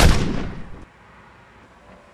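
A single loud gunshot with a booming tail that cuts off abruptly just under a second in.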